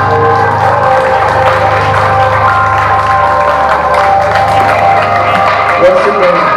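A live rock band's final chord ringing out, with held electric guitar and bass notes, over crowd applause and cheering. The low bass note stops near the end.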